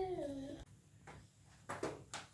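A toddler's drawn-out vocal sound, one held note slowly falling in pitch, that ends about half a second in. After a quiet stretch come a couple of short knocks near the end.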